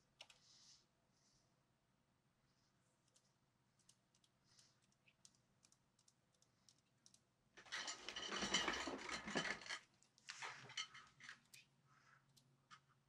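Push-button routing switches on an SSL 9000 J mixing console clicking as channels are reassigned: scattered single clicks, then a dense run of quick clicks for about two seconds past the middle, and a shorter run just after.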